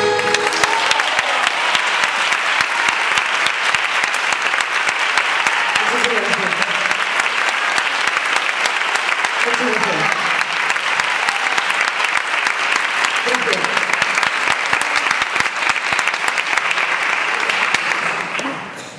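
Theatre audience applauding steadily as the song ends, with a few short voices calling out over the clapping.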